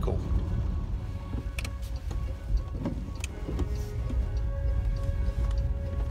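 Steady low rumble of road noise inside the cabin of a Fisker Karma plug-in hybrid driving in electric-only mode, with a few light clicks. Quiet background music with held notes comes in during the second half.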